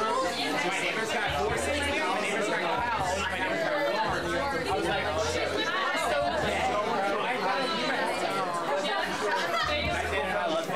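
Many people talking at once, overlapping chatter with no single voice clear, over music with a low bass line.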